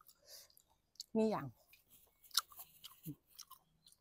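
Close chewing and mouth sounds: scattered wet clicks, lip smacks and small crunches.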